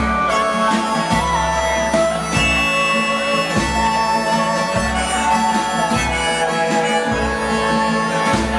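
Pedal steel guitar playing a lead break of held notes that slide between pitches, over strummed acoustic guitar, bass and drums in a live country band.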